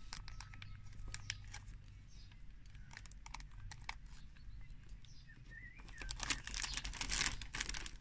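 Faint small plastic clicks as Lego pieces are handled and pressed together. About six seconds in comes a denser run of crinkling from the plastic parts bag.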